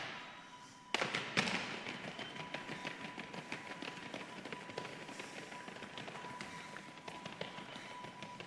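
Two sharp, heavy impacts about a second in, each ringing out in a large, echoing hall, then a long run of quick light taps over a steady high tone.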